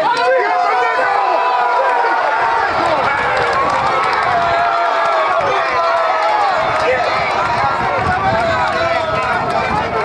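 Crowd of spectators and players shouting and cheering together, many voices at once, in celebration of a score in a rugby match.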